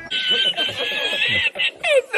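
A woman laughing in a high, sustained pitch, followed by shorter bursts of laughing near the end.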